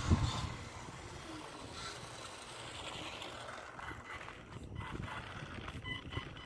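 ECX Torment short-course RC truck driving over loose gravel toward the camera, a steady rush of tyres on gravel with scattered small clicks. A sharp knock right at the start.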